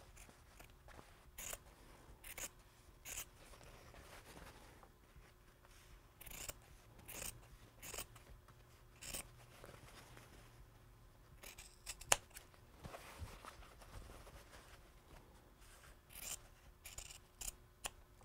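Scissors snipping through stretchy knit fabric, trimming the edge close to a zigzag stitch: a string of faint, short cuts at irregular intervals, about a second or more apart.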